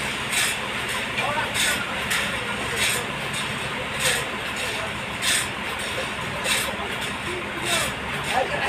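Forklift engine running steadily, with a sharp hiss-like burst repeating about every 1.2 seconds over it.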